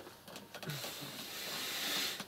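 A soft, even hiss that builds gradually over about a second and a half, with a brief low sound near the start.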